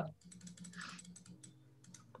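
Faint computer keyboard keystrokes: a quick run of light clicks.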